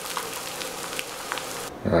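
Eggs sizzling in a frying pan with a splash of water, a steady hiss with a few small pops. It cuts off near the end and a man's voice begins.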